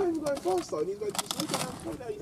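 Low, murmuring voices, with a few sharp clicks about halfway through as glass bottles are handled in a plastic tub.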